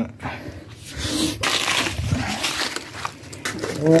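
Plastic food packets rustling and crinkling as they are handled and stacked on a shelf, with small knocks.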